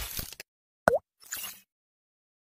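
Animated logo sound effects: a whoosh, then a short loud pop that dips and rises in pitch a little under a second in, followed by a brief swishing shimmer.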